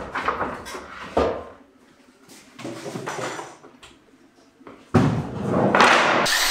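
Knocks and clatter of tools and fittings being handled, then about five seconds in a power drill starts and runs loudly, driving a screw into a wall plug that spins in its hole.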